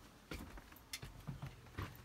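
Footsteps walking out through a doorway: a handful of light, irregular knocks.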